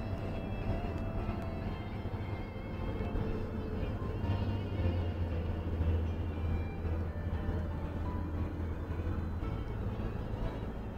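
Steady low rumble of a car's engine and road noise heard inside the cabin, with music playing faintly over it.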